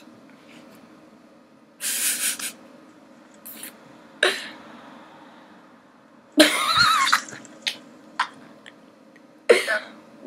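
A boy stifling laughter: about five short breathy bursts like coughs or snorts. The longest, about six and a half seconds in, has a wavering pitch.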